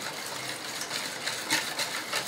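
Wire whisk stirring a liquid yeast-and-milk mixture in a plastic mixing bowl: a steady stirring noise with a few sharper clicks of the whisk against the bowl.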